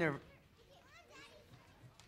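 Faint children's voices chattering in the background, rising a little about a second in.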